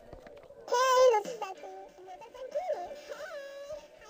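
Playback from Audacity: a short, very high-pitched, pitch-shifted voice about a second in, over a song with a wavering sung melody that carries on through the rest.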